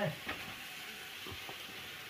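Faint, steady sizzle of food cooking in a pan on the fire, with a few soft knocks.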